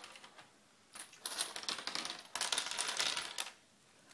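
Rapid crackling rustle of clothes and wicker in a laundry basket being disturbed, starting about a second in and lasting some two and a half seconds.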